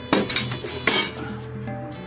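Loose metal parts of a reel push mower, handle arms and nuts, clinking against each other as they are handled in the shipping box: three sharp clinks in the first second. Background music plays throughout.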